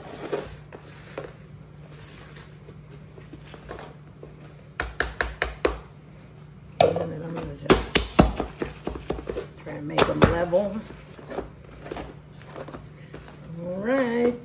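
Disposable aluminium foil cake pans crackling and knocking against a granite counter as they are handled and shifted, after a wooden spoon scrapes batter inside one of them. Two clusters of sharp crinkly clicks, the louder one in the middle, over a steady low hum.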